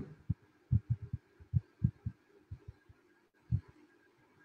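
A string of soft, low thumps at uneven intervals, about ten in four seconds, over a faint steady hum.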